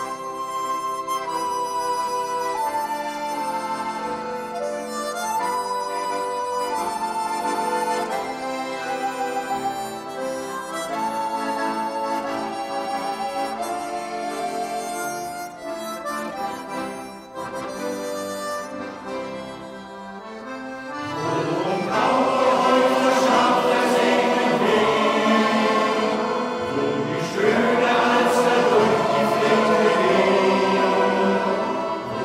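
Accordion playing an instrumental interlude, a melody of held reed notes with chords beneath. After about twenty seconds a men's choir comes in over it and the music gets louder.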